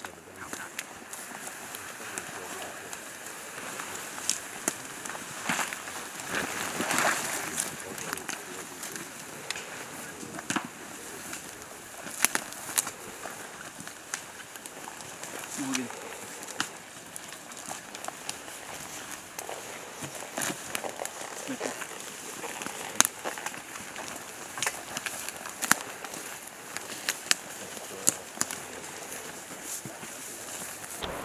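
Soldiers moving on foot through grass and ferns: gear and vegetation rustling, many sharp clicks and snaps scattered throughout, and low voices.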